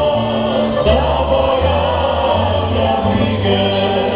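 Klapa, a Dalmatian male vocal ensemble, singing in close multi-part harmony, accompanied by acoustic guitars, mandolins and a double bass. The low bass notes move in steps under the held sung chords.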